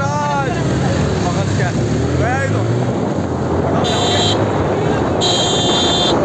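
Motorcycle engines running while riding, with wind on the microphone and men shouting over it. A steady high tone sounds twice in the second half, briefly at about four seconds and again from about five seconds in.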